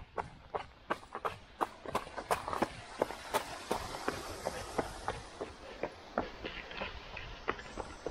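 Running footsteps of trail shoes, about three strides a second, first on a gravel track and then on the stone flags of a small bridge.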